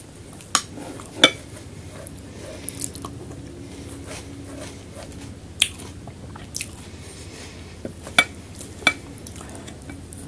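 Wooden spoon clicking and scraping against a glass bowl of yogurt meze and a dish of stuffed peppers: several sharp clicks spread apart, the loudest about a second in, with soft chewing between.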